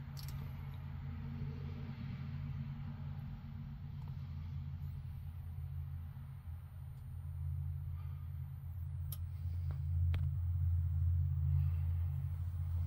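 A steady low hum, getting a little louder about ten seconds in, with a faint high-pitched whine above it.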